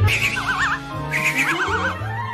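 Cartoon background music with a snoring sound effect from a sleeping cat: a short rasping intake followed by a warbling whistle on the out-breath, repeating about once a second.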